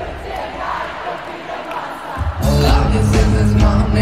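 Live rock band playing to an arena crowd, recorded from the audience. The bass and drums drop out for about two seconds, leaving voices and crowd noise, then the full band comes back in loudly.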